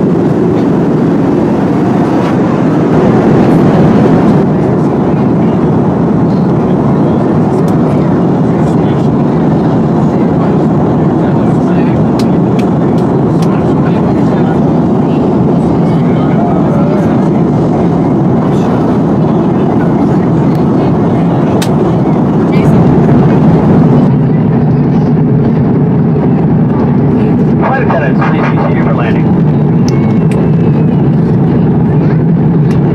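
Steady cabin noise inside an Airbus A330-200 in flight: a constant roar of engine and airflow. The high end thins out a little past the middle.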